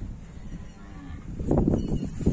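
Cattle mooing: a faint low call about half a second in, then a louder low moo starting about a second and a half in.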